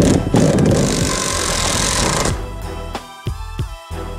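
Cordless drill boring into a wooden board, a loud grinding noise that stops about two seconds in. Background music with a steady beat plays throughout.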